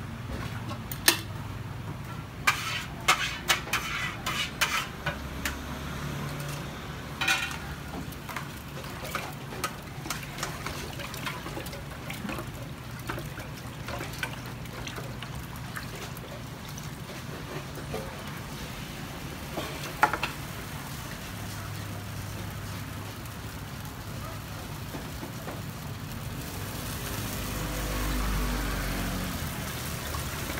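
Egg and cabbage sizzling on a flat round griddle, with sharp clinks and scrapes of a metal spatula and utensils, most of them in the first few seconds and one about twenty seconds in. The sizzle grows louder near the end.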